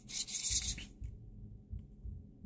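A short rubbing, scratching handling noise lasting under a second, then only a faint low hum.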